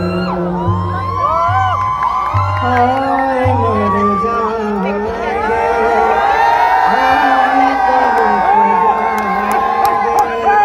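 A man singing live into a microphone through a PA system over amplified backing music, in held, wavering notes. An audience whoops and cheers throughout.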